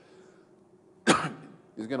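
A man clears his throat once, sharply, about a second in, after a moment of quiet room tone.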